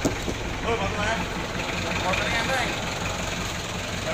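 1993 Isuzu Panther diesel engine idling steadily.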